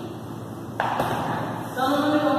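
Rubbing against a whiteboard that starts suddenly just under a second in, and a woman's voice speaking near the end.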